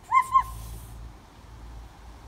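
Two quick, equal high hooting notes, a 'ku-ku' cuckoo call made by a child, with a short breathy tail after the second note.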